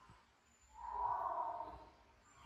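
A single soft breathy exhale, like a sigh, lasting about a second in the middle of an otherwise quiet stretch.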